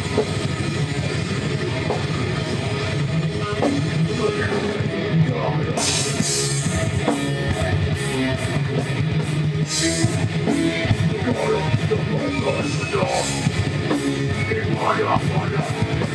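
Live band playing heavy rock on electric guitars and drum kit, loud and dense throughout, with cymbals coming in strongly about six seconds in.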